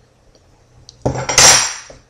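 Metal scraping on metal: a sharpening tool drawn once along the steel blade of a homemade short sword, a single loud scrape of about a second that starts about a second in.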